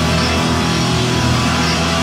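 Live rock band playing loud, with electric guitar holding steady, sustained chords.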